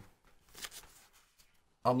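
Pages of a paperback dictionary being leafed through: a few faint paper rustles and flicks. A man's voice starts near the end.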